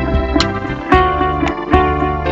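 Đàn nguyệt (Vietnamese moon lute) played melodically, single notes plucked with sharp attacks, over an instrumental backing with low bass notes underneath.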